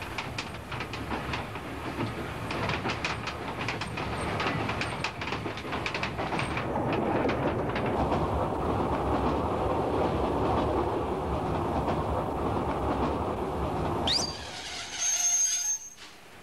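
Train pulling out and running along the track: rapid irregular clicking of the wheels over the rails at first, then a steady rumble. Near the end a short high whistle rises in pitch and holds.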